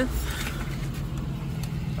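A vehicle engine idling with a steady low hum, heard from inside a car.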